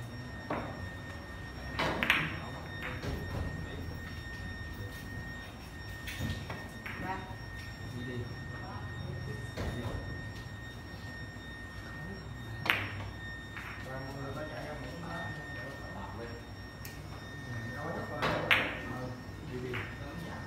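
Carom billiard balls being played: a series of sharp clacks from cue tip on ball and ball on ball. The loudest come about two seconds in, around thirteen seconds and near the end.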